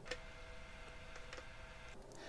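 Quiet room tone with a faint steady whine and a few soft ticks.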